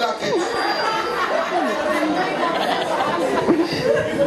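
Many voices talking over one another: audience chatter filling a gap in the act.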